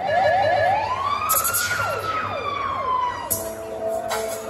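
Siren sound effect played through a club's sound system: a fast warble that swings up into a long wail, rising and then slowly falling, with quick downward sweeps over it. About three seconds in, a hit lands and sustained music chords come in.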